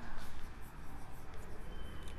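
Chalk writing on a chalkboard: light scratching strokes as words are written out.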